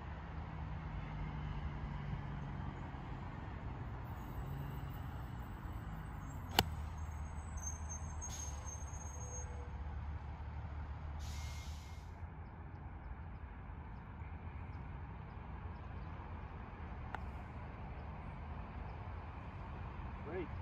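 A single sharp click of a 6 iron striking a golf ball off the fairway turf, about six and a half seconds in, over a steady low background rumble. A brief hiss comes a few seconds after the strike.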